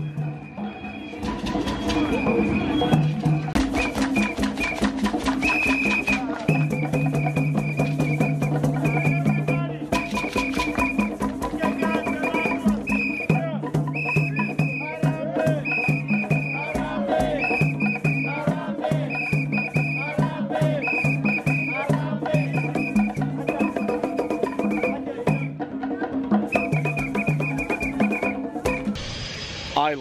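Live African-style band music: rapid hand-drum strokes over held pitched notes, with short breaks about ten seconds in and near the end.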